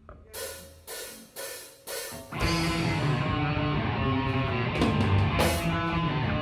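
Heavy metal band playing: four accented hits about half a second apart, each with a ringing cymbal crash, then the full band comes in a little over two seconds in with drums and distorted electric guitar riffing.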